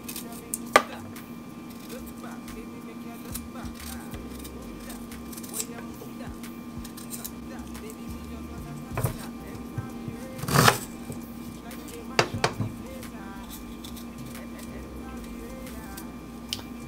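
Small kitchen knife peeling fresh ginger over a wooden cutting board: scattered knocks and scrapes of the blade and root on the board, the loudest about ten and a half seconds in, over a steady low hum.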